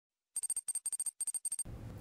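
Logo sound effect: a quick run of about six short, high ringing chime notes over about a second, like a sparkle or glint. It ends in faint room tone just before the voice starts.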